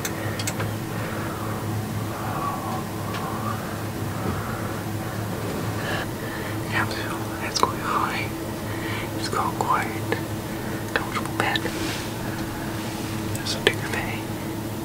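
A man whispering close to the microphone, over a steady low hum.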